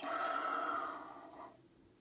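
A breathy, Darth Vader-style exhale from behind the Hasbro Black Series Darth Vader electronic helmet: a hiss that fades away over about a second and a half.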